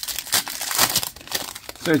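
Foil wrapper of a Panini Contenders basketball card pack being torn open and crinkled by hand, a dense crackling rustle that stops just before the end.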